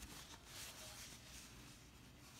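Near silence: room tone with faint rustling, as of denim fabric being handled.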